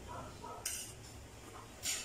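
Spoons scraping on ceramic plates, two short high scrapes, one under a second in and one near the end, under faint children's voices.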